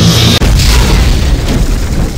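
Loud electronic dance music over club loudspeakers, heavy in bass and distorted on the recording, with a momentary cut-out about half a second in.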